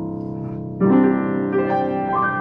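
Yamaha U3M upright piano played in chords: one chord rings on, then a louder chord is struck just under a second in and higher notes join it. The piano sounds slightly off in tune and is due for tuning.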